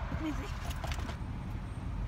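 Steady low rumble of a car heard from inside the cabin, with a brief voice fragment near the start and a few light clicks about a second in.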